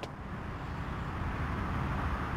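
Low, steady rumble of distant street traffic, slowly growing a little louder.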